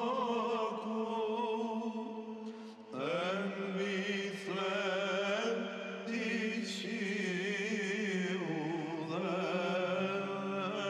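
Byzantine chant sung by a male monastic choir: a steady held drone (ison) under an ornamented melody. There is a short break about three seconds in, then a new phrase begins.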